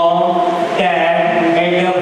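A man's voice through a microphone and hall loudspeakers, drawn out into a long sound held at one pitch in a chant-like way, with a short break about a second in.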